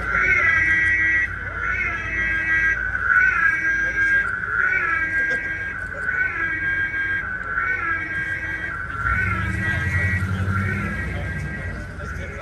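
Ecto-1 siren wailing, a rising-and-falling whoop that repeats about every second and a half. A low rumble joins in about nine seconds in.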